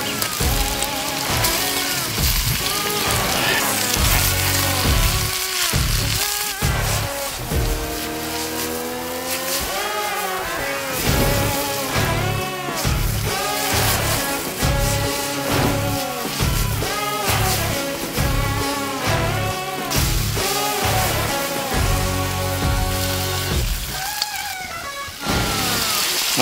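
Background music with a steady beat and a sliding lead melody.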